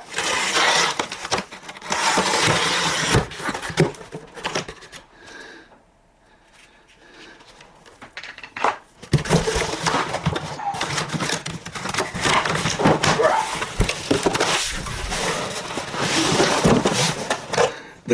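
A cardboard shipping box being opened: a blade scraping and slitting the packing tape for the first few seconds, then, after a quieter pause, cardboard flaps rustling and scraping as a large boxed kit is pulled out.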